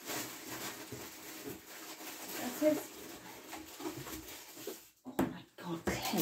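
Faint rustling and light knocks of packaging being handled and unpacked, with a single murmured word about halfway.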